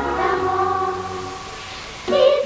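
Girls' children's choir singing, holding a chord that fades away in the second half into a brief lull.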